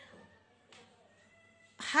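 A cat meowing faintly, one drawn-out call of about a second in a quiet room, followed near the end by a short, loud syllable of a woman's voice.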